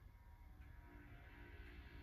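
Near silence from a VHS tape's blank gap on a television: a low steady hum, with faint music fading in about halfway through.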